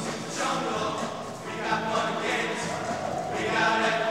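Show choir singing in held, sustained chords.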